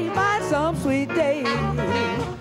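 A woman singing jazz-flavoured blues with a backing band, her long notes bending and wavering with wide vibrato over a walking bass line.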